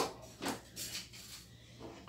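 A sharp knock as an object is set down on the countertop, followed by a few faint, brief handling sounds.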